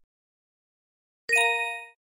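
A single bell-like electronic chime, a sound effect that starts suddenly about a second and a quarter in and fades away within about half a second.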